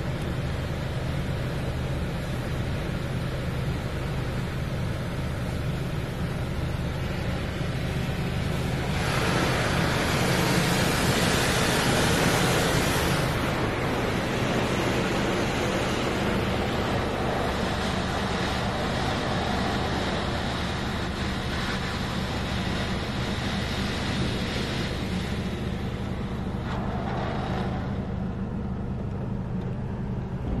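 Belanger Vector in-bay automatic car wash spraying water over the car, heard muffled from inside the cabin over a steady low hum. About nine seconds in the spray gets louder and brighter for some four seconds as it passes across the car, then settles back.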